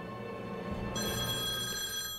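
A telephone in the cartoon's soundtrack starts ringing about a second in, a steady ring lasting about a second, over low background music.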